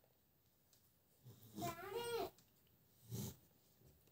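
A young child's drawn-out vocal sound, wavering up and down in pitch for about a second, followed a second later by a short, fainter one.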